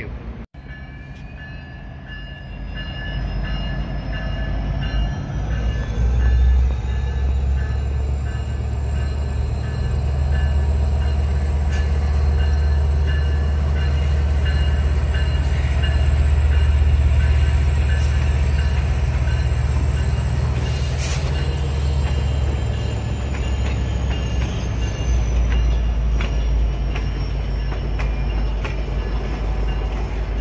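A West Coast Express diesel commuter train running by, its deep rumble building over the first several seconds and holding steady. Thin high whines from the wheels on the rails rise in pitch early on and fall again near the end.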